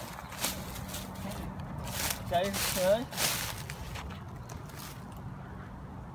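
Footsteps crunching through dry fallen leaves on a rocky trail, several steps in the first three or so seconds. A short snatch of voice comes about two and a half seconds in.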